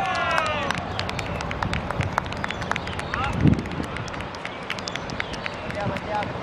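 Players shouting as a goal is scored on a football pitch, the shouts dying away within the first second. After that come scattered sharp claps and taps, a short call, and a dull thump about three and a half seconds in.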